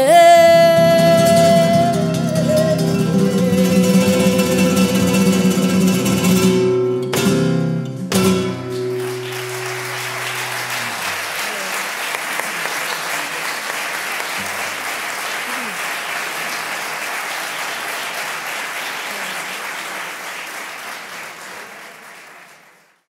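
A flamenco song ends: a female voice holds a last sung note over a flamenco guitar, and the guitar closes with two sharp final chords about seven and eight seconds in. The audience then applauds, the clapping fading away toward the end.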